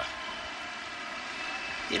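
A large arena crowd applauding, a steady even wash of clapping.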